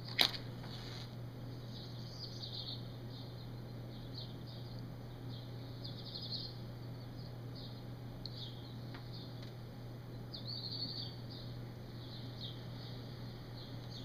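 Faint, irregular little draws and puffs on a tobacco pipe, heard as soft high squeaks every second or so over a steady low hum. There is one sharp click just after the start.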